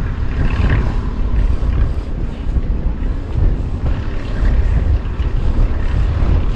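Wind buffeting the camera microphone: a loud, unsteady low rumble with a hiss over it.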